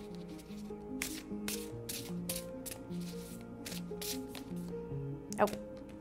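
A deck of oracle cards being shuffled and handled, a run of irregular crisp card snaps and flicks, over soft background music with slow held notes.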